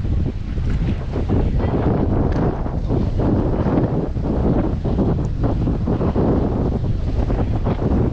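Wind buffeting the microphone with a continuous, gusting low rumble, over choppy sea waves washing against a stone seawall.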